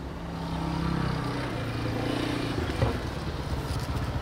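Small motorcycle engine approaching, growing louder and dropping slightly in pitch as it slows, then running steadily at low speed. There is a brief click near the end.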